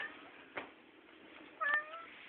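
A house cat calling twice: a brief rising chirp at the start and a short meow near the end.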